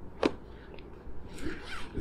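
Black fabric lid of a portable tennis ball cart being handled and pulled over the top. There is a sharp click about a quarter second in, and a rustle of fabric near the end.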